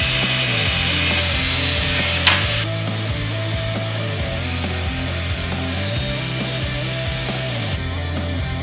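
Angle grinder cutting a slot into the end of a steel tube, a loud, steady grinding hiss that ends abruptly about two and a half seconds in. Background music with a steady bass line continues throughout.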